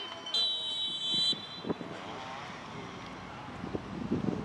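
Referee's whistle: a single shrill blast of about a second, shortly after the start, signalling a stoppage in play. Faint players' shouts follow.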